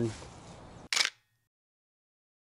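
Faint outdoor background, then a single camera shutter click about a second in.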